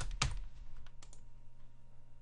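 Computer keyboard typing: two clear keystrokes at the start, then a few fainter clicks, over a low steady hum.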